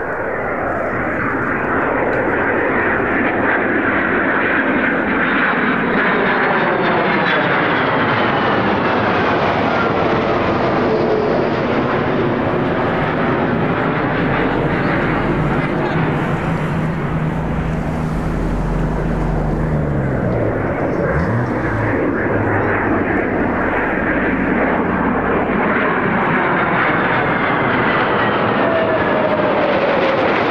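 Lockheed Martin F-22 Raptor jet fighters flying overhead in pairs, their F119 turbofan engines making a loud, continuous jet roar. Whining tones fall in pitch as each jet passes by.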